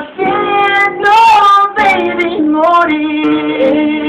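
A man singing a drawn-out, wordless R&B melody with long held notes, accompanied by an acoustic guitar.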